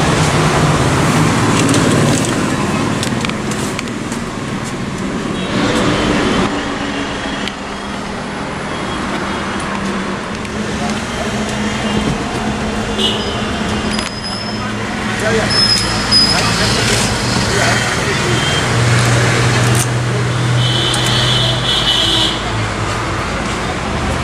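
Indistinct voices in the background over steady road-traffic noise.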